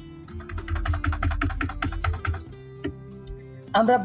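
Computer keyboard keys clicking in a quick, even run for about two seconds, then a few single clicks, as text is deleted from a spreadsheet formula. A soft background music bed plays underneath.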